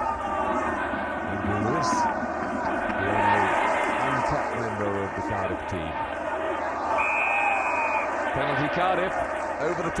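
Stadium crowd noise with voices, and about seven seconds in a single steady referee's whistle blast lasting about a second, stopping play at a ruck for a penalty.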